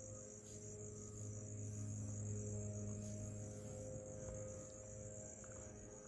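Crickets chirring in a steady high trill, over the faint low hum of a distant motor that swells slightly about halfway through.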